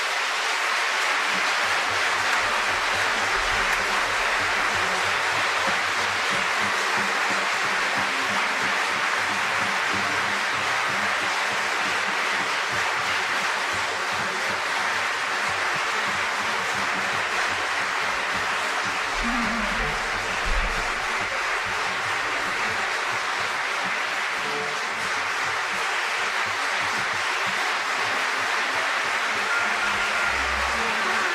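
Concert audience applauding: dense, even clapping at a steady level.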